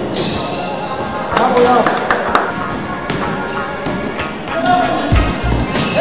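A basketball game in a gym hall: a ball bouncing on the hardwood floor and players calling out, with echoing knocks. Music with a heavy bass comes in near the end.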